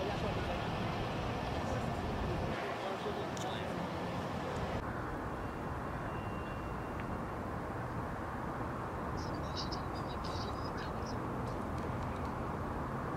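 Steady outdoor street ambience of distant traffic and engine hum, with indistinct voices in the background. A few short high chirps come near the end.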